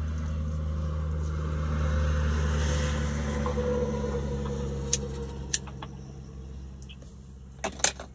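Vehicle engine running steadily, heard from inside the cab as a low hum. A swell of louder rushing noise comes a couple of seconds in, and a few sharp clicks follow near the end.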